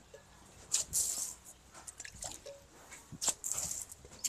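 Water thrown by hand from a bucket and splashing onto a dry earthen courtyard floor, twice: about a second in and again a little after three seconds, with smaller splatters between.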